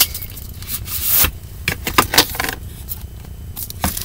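Handling noise as an eyeshadow palette is taken out of its cardboard box and opened: scraping and a series of light clicks and taps of cardboard and plastic.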